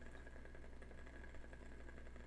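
Faint room tone: a steady low hum with nothing else happening.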